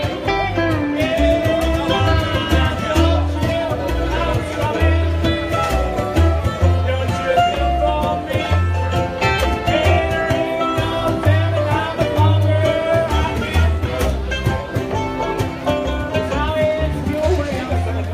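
Live band music through a PA: electric guitars over heavy, repeated upright bass notes, with a man singing at the microphone and a steady rhythmic beat.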